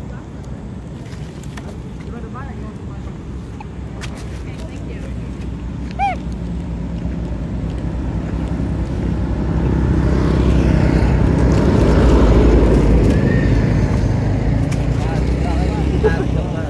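A motor vehicle's engine rumbling, growing louder to a peak about three-quarters of the way through and then easing as it passes. A brief high squeak about six seconds in.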